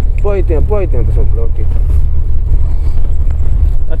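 Steady low rumble of a vehicle's engine and tyres, heard from inside the cabin while it drives along a snowy road.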